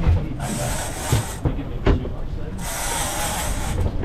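Fishing reel ratcheting as line is played on a hooked fish, over a low rumble and two spells of hiss, with one sharp knock just before the middle.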